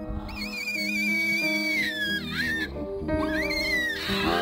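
Background music with steady notes, over which a baby langur screams: one long, high, wavering cry that drops away about halfway through, then a second, shorter, rising cry near the end.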